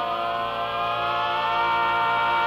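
Barbershop quartet singing a cappella, holding a long sustained chord. The voices slide slowly upward and settle into a slightly louder chord about a second and a half in.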